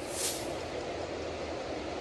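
A low, steady rumble with a short hiss in the first half-second, the kind of rumble that reads as the ground shaking.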